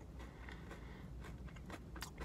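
Faint chewing of a bite of chocolate-coated Kit Kat wafer, with soft irregular crunches and mouth clicks.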